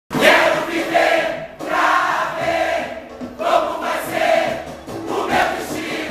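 A large mixed choir of samba-school singers sings a samba-enredo together in loud massed phrases, each about a second long.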